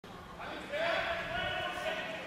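A curler's shouted call, one long held note starting less than a second in and lasting over a second.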